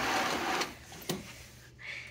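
Hotel drapes pulled along their track by the curtain wand: a sliding rush that stops about two-thirds of a second in, followed by a single light click about a second in.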